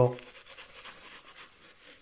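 Faint, quiet scratching and rustling, like small handling noises, after the tail of a spoken word.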